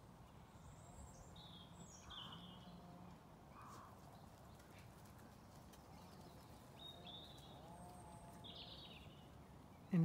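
Quiet outdoor ambience with a few faint, short, high bird chirps: a pair soon after the start and more near the end.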